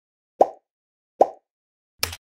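Two short pop sound effects, a little under a second apart, as animated on-screen buttons pop into view.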